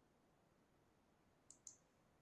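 Near silence, broken by two faint, sharp clicks in quick succession about one and a half seconds in.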